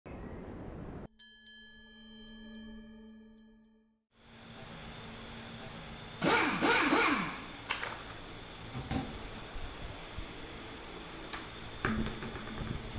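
A short chiming logo sting with ringing tones, then a brief gap. After it comes garage room tone with a steady hum, scattered knocks and a louder burst of wavering scrapes about six seconds in.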